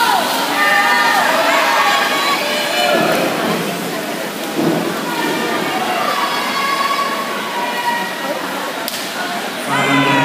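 Spectators yelling and cheering for swimmers in a race, high-pitched drawn-out shouts over a constant wash of crowd noise and water, echoing in an indoor pool hall.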